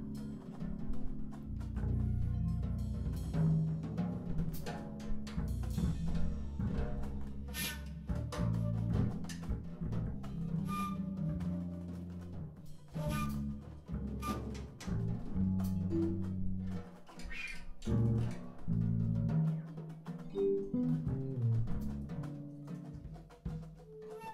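Free-improvised jazz played live on a drum kit, with irregular drum and cymbal strikes over low, shifting pitched notes and no steady beat.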